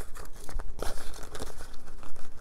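Paper money and clear plastic envelopes crinkling and rustling as they are handled, in a run of irregular small crackles and clicks.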